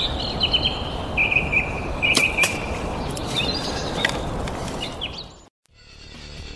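Outdoor nature ambience: a steady rushing background with high bird chirps over it and a couple of sharp clicks about two seconds in. It cuts off abruptly shortly before the end.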